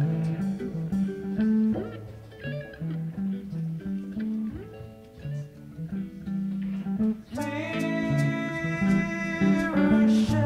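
A live rock band playing an instrumental passage: guitar lines over a moving bass guitar. It thins out and softens in the middle, then a sustained full chord swells in about seven seconds in.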